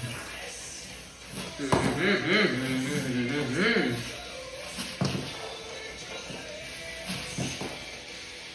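A boy's voice humming and laughing in short bursts, with a couple of sharp knocks.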